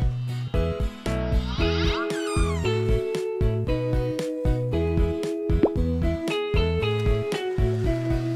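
Background children's music with a steady beat and a simple melody. A wavering sound effect that slides downward in pitch cuts in between about one and a half and three seconds in.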